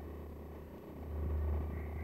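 A low, steady rumbling hum that swells about a second in.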